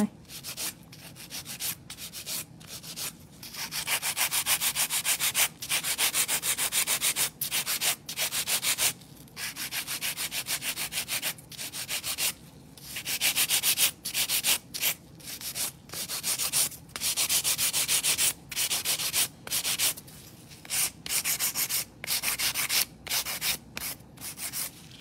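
Straight hand nail file rasping against artificial stiletto nail extensions, shaping them in runs of rapid back-and-forth strokes with short pauses between runs.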